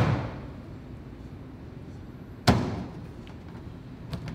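Hand-pulled noodle dough slapped down onto a stainless steel worktable: one loud slap about two and a half seconds in, with the fading tail of another slap just at the start. Slamming the dough like this loosens it so it is easier to stretch.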